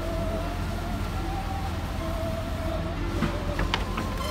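Heavy vehicle rumbling steadily, with a high, steady whine over it that stops about three quarters of the way through, and a few sharp clicks near the end.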